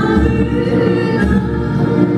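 Live Arab music ensemble: a woman singing into a microphone over violin, lute and frame drum, with the drum's low beats under the melody.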